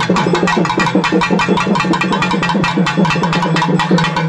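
Folk drumming on pairs of double-headed drums beaten with sticks: fast, even strokes over a steady low drone.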